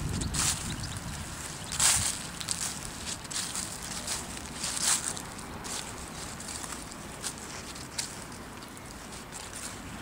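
Footsteps of a person walking on dry grass, a soft swish every second or two, with a low rumble on the microphone in the first couple of seconds.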